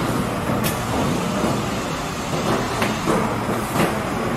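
Semi-automatic PET bottle blow-moulding machine running: a steady low hum under a rushing noise, with three sharp clicks, about half a second in, near three seconds and near the end.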